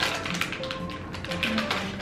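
Irregular light clicking and crackling of small plastic snack wrappers being handled and torn open, with soft background music under it.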